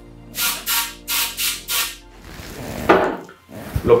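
Aerosol can spraying gun oil into a shotgun barrel's muzzle in five quick short bursts, followed by a short rustle near the end.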